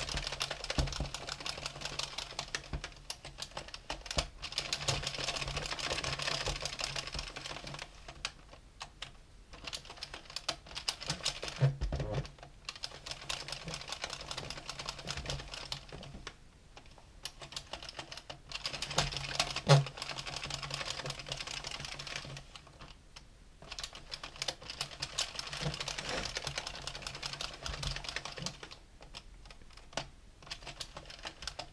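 Addi Professional 22-needle circular knitting machine being hand-cranked: its plastic needles clatter rapidly past the cam in passes of several seconds. Short pauses between passes are where the crank is reversed for each new row of a flat panel, and there are a couple of louder knocks.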